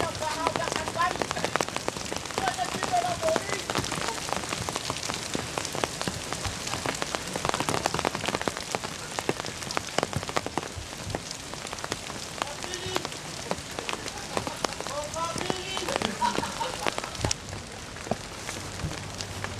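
A steady, dense crackling patter that runs throughout, with faint voices briefly near the start, again a few seconds in and again a little before the end.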